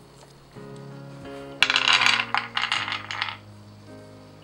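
Roasted almonds poured onto a wooden cutting board, a dense clatter of small hard nuts lasting nearly two seconds, over soft background music.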